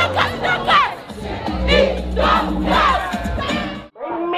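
Crowd screaming and cheering in celebration, many voices shouting at once, with bass-heavy music underneath. It cuts off abruptly just before the end.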